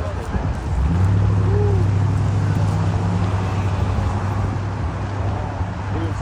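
A steady low mechanical hum, like a motor or engine running, comes in about a second in and holds over a noisy outdoor background.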